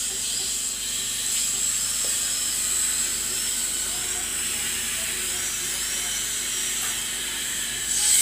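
High-pitched whine of a dental drill over a steady hiss, the drill's pitch dipping and recovering several times in the middle.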